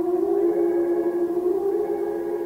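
Experimental drone music: one sustained tone with several fainter overtones above it, wavering slightly in pitch.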